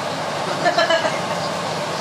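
A steady rushing noise, with a brief faint voice a little after half a second in.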